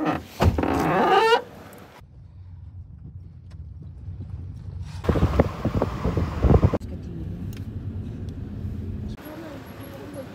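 A car being driven, heard from inside: a steady low engine and road rumble that swells louder for a couple of seconds in the middle. It opens with a loud pitched call lasting about a second, and the rumble cuts off shortly before the end.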